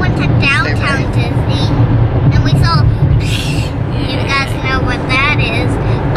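Steady low rumble of a car's road and engine noise heard inside the cabin, with a young child talking in a high voice over it in short phrases.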